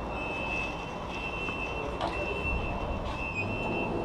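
A lift's electronic beeper sounding a high, steady beep about once a second, each beep lasting most of a second, over a low rumbling background. There are a couple of short knocks as bicycles are wheeled into the lift car.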